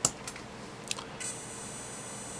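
A sharp click as the RC helicopter's receiver is powered up, a couple of faint ticks, then from about a second in a faint steady high-pitched buzz from the freshly powered servos holding position while the gyro initializes.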